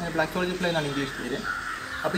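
A crow cawing once in the background, near the end, behind a man talking.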